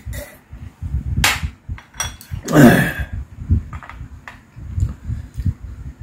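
Close-miked swallowing and eating noises: soft low thumps throughout, a few sharp clicks of a glass and tableware, and a loud voiced exhale falling in pitch about two and a half seconds in, just after a gulp of drink.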